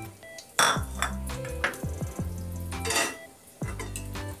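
Kitchen clinks of dishes and a metal pot, two short strikes about half a second and three seconds in, over background music.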